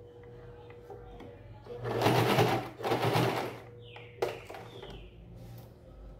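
Domestic electric sewing machine stitching through layered fabric in two short runs, about two and three seconds in, followed by a sharp click.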